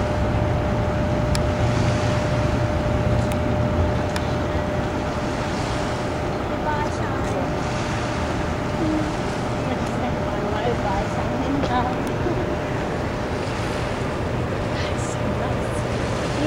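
Steady rush of turbulent river water released through the dam's open floodgates, with wind buffeting the microphone and a thin steady hum running underneath.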